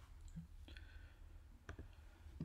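Near silence broken by a few faint clicks, one about two-thirds of a second in and a pair near the end. They are typical of a computer being clicked to advance a presentation slide.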